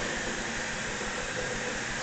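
A steady, even hiss of background noise with no distinct event.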